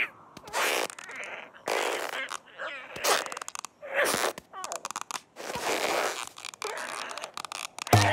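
Cartoon sound effects: a string of short noisy comic sounds about a second apart, mixed with the bird character's wordless strained squeaks and grunts as his neck is pulled and stretched out of a hole in a rock.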